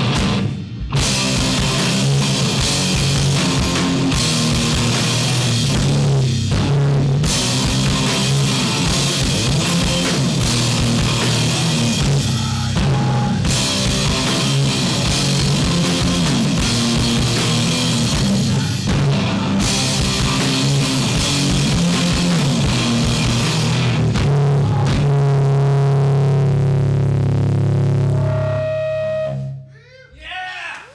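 Sludge metal band playing live: loud electric guitars and drum kit riffing together, with several short stop-start breaks. Near the end the band holds one low chord, which rings and fades out as the song ends.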